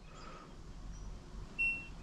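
An LG top-loading washing machine's control panel gives one short, high electronic beep near the end as a programme button is pressed.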